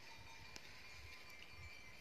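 Quiet hillside ambience: faint, thin tinkling of livestock bells from a grazing sheep flock over a low rumble of wind on the microphone.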